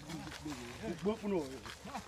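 A person talking in Thai.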